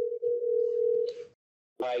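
A telephone tone on a call line as a call is placed: one steady held note lasting about a second and a half, then cut off.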